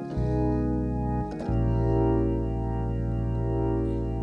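Hammond organ playing sustained gospel chords over a held bass note: a D-flat chord for about a second, a brief gap, then a B-flat diminished seventh chord held steadily.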